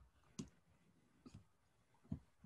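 Near silence broken by a few faint clicks: one about half a second in and a quick pair near the middle. They sound like computer mouse clicks made while searching for a file.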